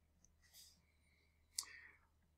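Near silence, with faint pen-on-paper sounds and a single small click about a second and a half in.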